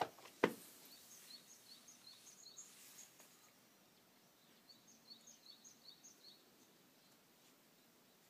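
Small birds chirping faintly in short, quick, high notes, in two runs, with two sharp knocks right at the start.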